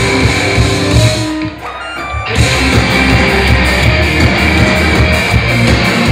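Loud live heavy rock band playing, with electric guitars, bass and drums. About a second and a half in the band briefly drops out to a thinner sound, then crashes back in at full force a little over two seconds in.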